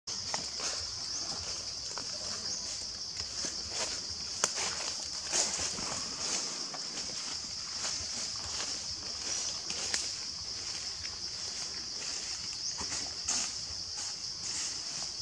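A steady, high-pitched chorus of insects, with scattered short clicks.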